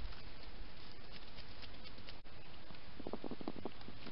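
Hedgehog feeding at a dish, heard as a quick run of about seven small wet clicks near the end, over the steady hiss of a wildlife camera's microphone.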